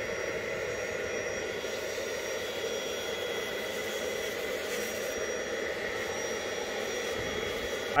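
Bissell Little Green portable carpet extractor running with a steady motor whine, its hand nozzle drawn over wet carpet to suck up hot water and paint that has been liquefied again.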